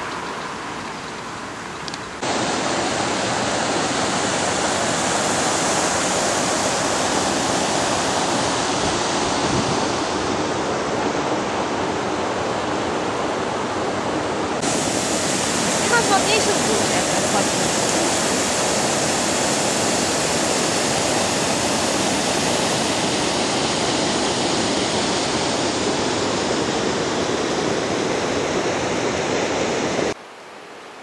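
Steady rush of water pouring over a low stepped river weir, an even hiss of falling water. It jumps abruptly louder about two seconds in and again about fifteen seconds in.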